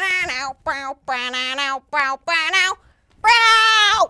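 A performer's voice making sound effects: a quick run of short, high cries, then one long, loud held cry near the end. The cries act out the struggle as the pelican catches the burglar.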